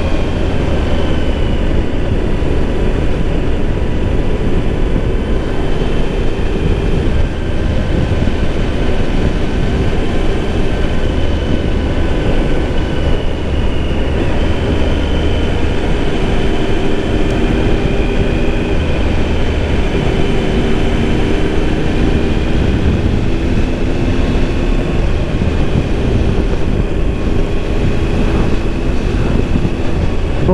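Motorcycle engine running at a steady road speed, heard from on board, with heavy wind rumble on the microphone. The engine pitch drifts gently up and down as the throttle changes.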